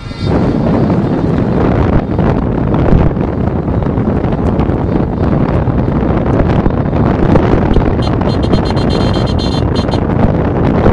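Strong wind buffeting the phone's microphone, a loud, steady rumble, with vehicle engines running underneath.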